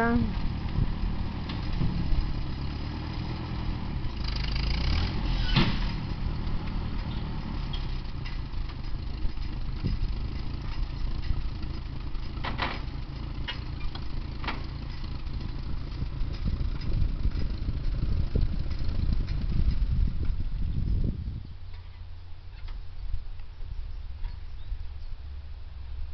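Ford farm tractor's engine running steadily while pulling on a beech tree, with a few sharp knocks along the way. About 21 seconds in the engine drops back to a quieter, lower idle.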